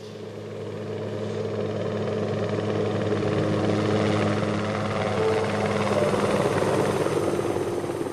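A low droning rumble with a hiss, swelling up over the first few seconds and easing off near the end: an opening sound effect of the skater's program soundtrack over the arena speakers.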